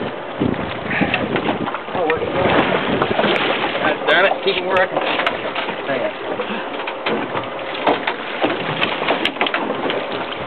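Steady noise of a fishing boat at sea, with wind and water, under indistinct, excited voices of the crew.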